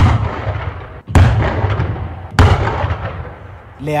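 Three loud ceremonial pyrotechnic blasts about a second and a quarter apart, each a sharp bang followed by a long echoing rumble that fades away.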